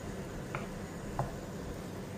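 Wooden spoon stirring cooked rice and vegetables in a nonstick frying pan: a soft, low rustle with two light taps of the spoon against the pan, about half a second and a second in.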